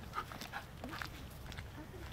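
A golden retriever whining in a few short, rising-and-falling whimpers, with footsteps on an asphalt path.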